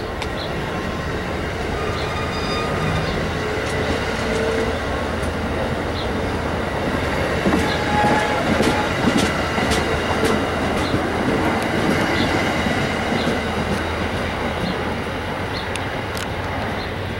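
Amtrak Amfleet passenger cars rolling past close by as the train pulls out, their wheels clattering over the rail with scattered sharp clicks and brief light squeals. It grows a little louder midway, then eases as the last car passes.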